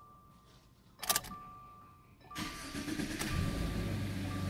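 A Subaru flat-four engine being started: the starter cranks for about a second, then the engine catches and settles into a steady fast idle.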